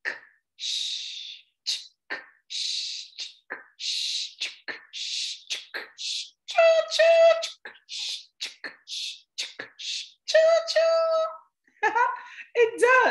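A woman's voice imitating a steam train: the 'ch', 'k' and 'sh' sounds said fast and rhythmically as a chugging run of hisses and clicks. Twice, about halfway and near the end, she breaks in with a pitched double hoot like a train whistle.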